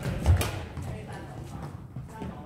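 Badminton racket striking a shuttlecock, with a low thud of feet on the wooden court floor, a fraction of a second in. After that the hall goes quieter, with voices in the background.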